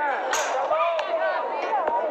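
An aluminium softball bat cracks against a pitched softball once, about a third of a second in, fouling the pitch off. A crowd is talking and calling out underneath.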